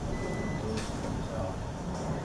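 Steady low rumble of outdoor vehicle noise, with one short, thin high beep lasting about half a second near the start.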